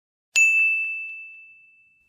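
A single bright ding, like a small bell or chime sound effect, struck once and ringing out as it fades away over about a second and a half.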